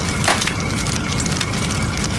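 Dense, steady crackling like a fire burning, with one sharper crack about a third of a second in.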